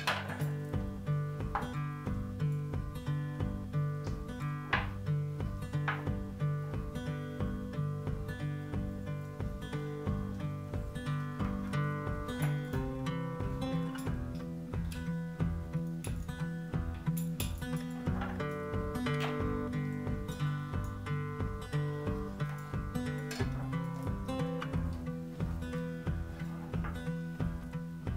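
Background music: strummed acoustic guitar with a steady, even rhythm.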